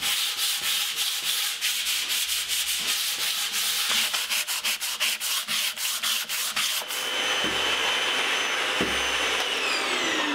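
Sandpaper rubbed by hand over a primed wooden drawer front in rapid, rhythmic back-and-forth strokes, cutting down the raised grain of the dried latex primer and the joint-compound fill. About seven seconds in it gives way to a canister vacuum with a brush attachment running steadily with a whine as it picks up the sanding dust.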